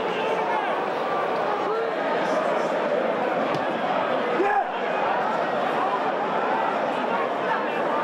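Football stadium crowd: a steady din of many voices, with individual shouts rising out of it.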